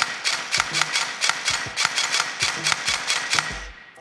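Airsoft V2 gearbox run by a Perun V2 Optical MOSFET, dry-firing out of the gun in rapid single cycles, about four a second, as the freshly calibrated trigger is tested.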